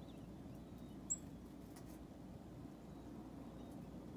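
A single brief, high-pitched chirp about a second in, a black-capped chickadee call note, over a quiet steady background hush.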